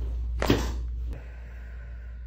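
A single sharp crack and thump about half a second in, as a side-lying chiropractic back adjustment is thrust and the spinal joints release.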